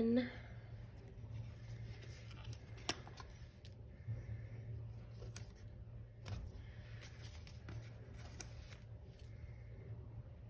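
Paper planner sticker being peeled from its backing sheet and pressed onto a planner page, with a few small crinkles and clicks of the paper scattered through, over a faint low steady hum.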